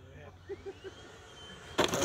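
Faint whine of a model jet's electric ducted fan, rising in pitch over the first second and then holding steady, as the F-22 model comes in to land. Near the end a sudden rough burst of noise sets in.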